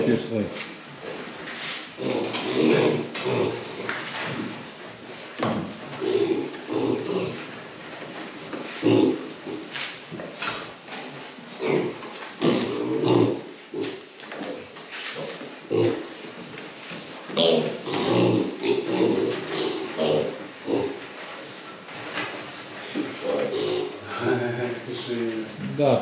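Weaned piglets grunting in many short, broken calls as they are carried into a pen and let loose on a slatted floor, with a few sharp knocks.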